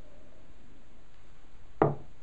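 Quiet room tone, then near the end a single knock of a tasting glass being set down on a wooden barrel top.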